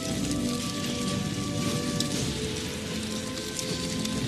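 Film score of slow, sustained tones over a steady hiss and crackle of molten metal sizzling, with a few sharp crackles.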